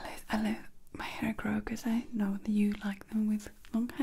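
A woman's voice close to the microphone in short, whispery syllables, with no clear words.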